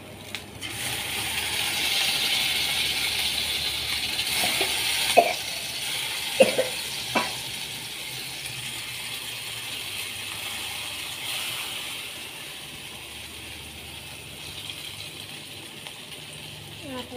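A steady hiss that swells in the first couple of seconds and fades out by about twelve seconds in, with three sharp clinks of a metal fork on tableware about five to seven seconds in.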